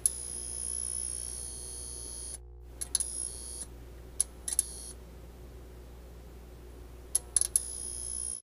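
Electronic end-screen sound effect: a steady low hum under high-pitched beeping tones and several sharp clicks. It cuts out briefly about two and a half seconds in.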